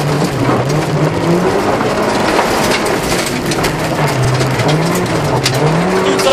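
Honda Civic 1.5's four-cylinder engine under hard acceleration on a rally stage, its revs climbing and dropping in waves through gear changes and corners. Tyres crunch over a broken gravel-and-asphalt surface, with scattered sharp knocks of stones.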